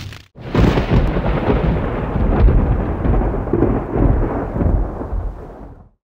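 Deep, thunder-like rumbling sound effect accompanying an animated fiery intro logo. It starts suddenly about half a second in after a brief gap, swells a few times, then fades and cuts off just before the end.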